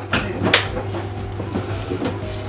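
Cutlery clinking and scraping on a plate while eating, with two sharp clicks in the first half second, then fainter taps.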